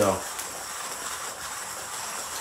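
St. Anthony Industries Millwright hand coffee grinder being cranked, its burrs crushing beans at a coarse setting (click 35) with a steady, even grinding noise.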